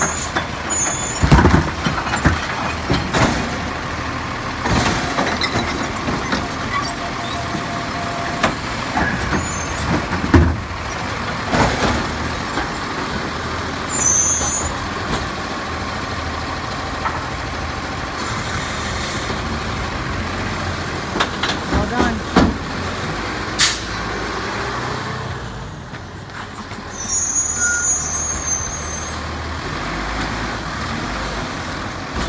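Automated side-loader recycling truck working a curbside cart: the diesel engine runs under hydraulic load while the lift arm dumps the cart, with repeated bangs and clatter from the cart and the falling recyclables. Several short air-brake hisses are heard, and later the engine's pitch rises as the truck pulls away.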